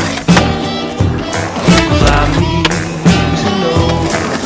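Music with a steady beat and held tones, with skateboard sounds mixed in: a board working a metal handrail and hitting the ground in sharp knocks.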